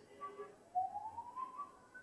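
Dry-erase marker squeaking on a whiteboard as a line is drawn. A short lower squeak comes near the start, then a thin squeak rises in pitch for about a second.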